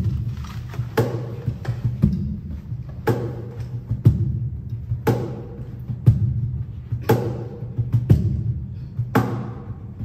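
A stage keyboard playing low sustained chords, the open triads of a jazz etude for the left hand, while the player beats a cajon with his right hand, about one strong stroke a second with lighter taps between.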